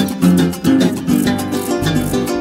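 Instrumental passage of a Venezuelan joropo llanero, led by the llanera harp playing quick plucked runs over a brisk, steady rhythm.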